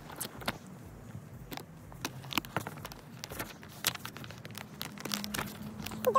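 Rustling and crinkling of things being handled by hand, with scattered light clicks and taps; a low steady hum begins near the end.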